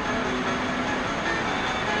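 Steady road and engine noise of a car in motion, heard from inside the cabin.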